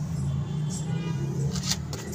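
A steady low hum of a running engine.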